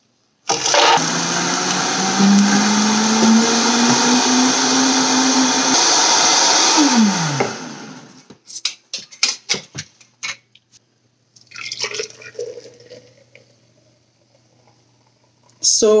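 High-powered Vitamix blender blending raw cashews and water into cashew milk. It starts about half a second in, its motor pitch rising slowly as it speeds up, then it is switched off and winds down with a falling whine about seven seconds in. A few short sharp clicks and knocks follow.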